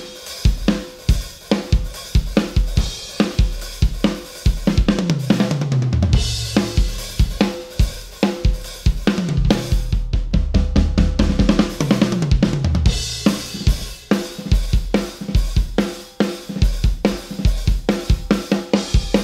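Large Natal maple drum kit with double bass drums, Roto toms and Sabian cymbals played in a rock groove, with snare, bass drum, hi-hat and cymbal crashes. Tom fills run down the kit in falling pitch about five seconds in and again around eleven to thirteen seconds.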